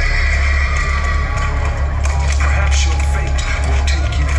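Loud amplified music with a heavy, steady bass rumble, over crowd noise with some cheering.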